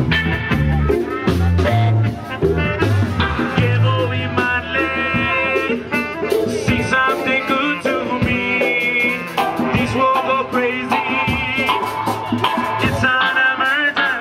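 Live band playing an upbeat Latin number on electric bass, drums and electric guitar, with a horn section of trumpet, trombone and saxophone. Heavy bass notes lead for the first few seconds, then sustained horn or vocal lines come in over the groove.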